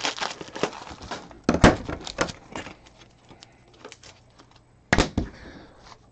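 Plastic card sleeves and a top loader being handled: rustling and sharp clicks over the first couple of seconds, then a loud double click about five seconds in.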